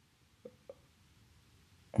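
Near silence: room tone, broken by two faint, very short blips about a quarter of a second apart near the middle.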